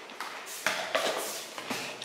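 A few light taps and clicks of small things being handled, spread across the two seconds over faint room noise.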